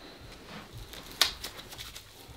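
Faint handling noises from a CAT tourniquet on an arm: a few soft scratches and rustles of the strap, with one sharper click about a second in.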